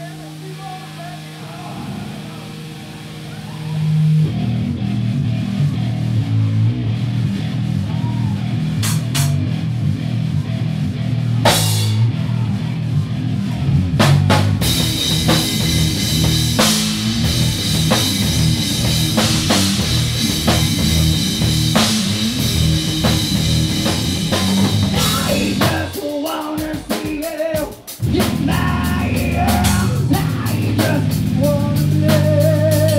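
Live rock band: an electric guitar holds a sustained note, then drums and electric guitars come in loud about four seconds in. Near the end the band breaks off briefly and then comes back in.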